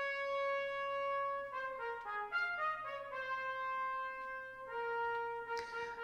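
Computer playback of a brass band score from Sibelius notation software: the cornets and trombones play the returning motive, a long held note, then a run of shorter stepped notes, then more held notes.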